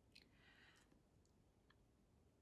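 Near silence with a few faint ticks and a brief soft scratch, from the tip of a fine brush touching watercolor paper as small bird marks are painted.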